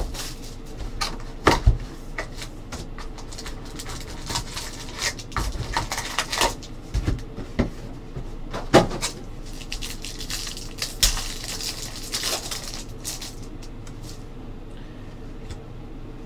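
Cardboard trading-card box and card packs being handled and opened by hand: rustling of cardboard and wrapper with scattered sharp knocks and clicks, the sharpest about a second and a half in and near the middle.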